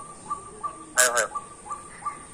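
A small bird chirping over and over, short chirps a few times a second. About halfway through comes a brief burst of a person's voice.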